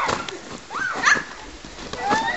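A child's short high-pitched yelps about a second in, among faint knocks.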